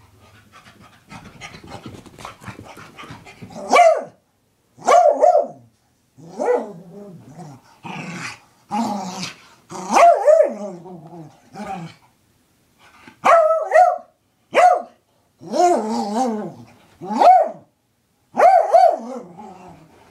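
Beagle-type dog barking and growling in a post-bath frenzy, about a dozen short, throaty barks and yowls in an irregular string. It starts with a few seconds of scuffling and rubbing on the carpet.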